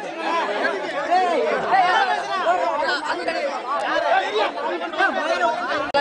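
A crowd of men talking and arguing over one another at close range, many voices at once with no break.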